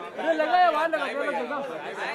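Several people talking over one another, a crowd's chatter with no single clear speaker.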